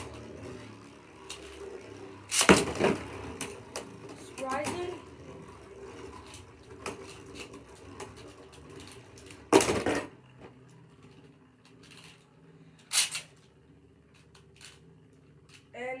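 Two Beyblade Burst tops, Spriggan Requiem and Achilles, spinning and clashing in a plastic stadium: a steady whir broken by loud clacks about two and a half seconds in, near ten seconds and near thirteen seconds. After the clack near ten seconds the whir thins out as one top is left spinning alone. The battle ends in a burst finish for Achilles.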